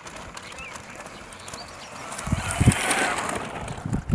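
Bicycle tyres crunching on a gravel path as a rider rolls up close and stops, swelling about two seconds in and loudest about three seconds in, with low thumps underneath.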